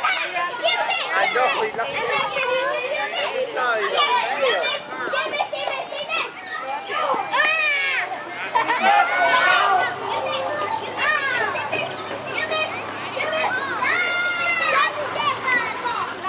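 Many children's voices calling and shouting over one another, with adult voices mixed in, as spectators and players at a youth baseball game.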